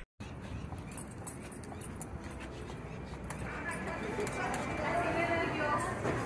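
Indoor ambience of a busy takeout restaurant counter: a steady background hum with scattered clicks and clatter, and indistinct voices that grow louder from about three seconds in. Light handling and footstep noise comes from the phone being carried in.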